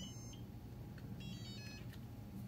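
TGY-i6S radio transmitter's beeper: its power-up tune ends just after the start, and about a second in comes a short run of quick stepped electronic beeps. These are the receiver confirmation tones, the sign that the transmitter has linked to its bound TGY-iA6B receiver.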